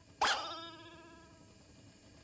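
A cartoon voice for the sick phoenix: one short, sudden squawk that fades out over about a second.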